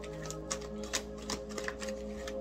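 A deck of tarot cards being shuffled by hand, a run of quick, irregular clicks and taps, over soft background music with steady held tones.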